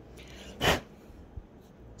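A single short puff of breath about two-thirds of a second in, over quiet room tone, with a faint tap a little later.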